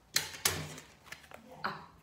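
A few sharp knocks and light clatter of objects being handled and set down, then a spoken 'up' near the end.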